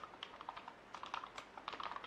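Computer keyboard being typed on: a quick, irregular run of faint key clicks as a terminal command is entered.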